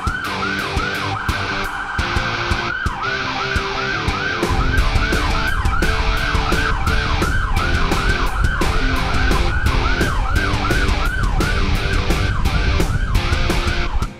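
Escort vehicle's electronic siren in a fast yelp, about three rising-and-falling sweeps a second, pausing briefly about a second in and then running on. Background music with a steady beat plays under it, and a low rumble comes in about four seconds in.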